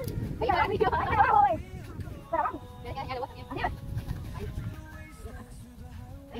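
Children's voices calling out in short, wavering, wordless bursts over a low wind rumble on the microphone.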